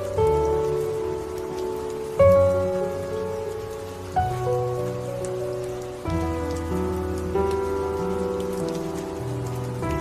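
Slow, soft piano instrumental, with new notes and chords struck about every two seconds and left to ring, over a steady rain ambience of pattering rain.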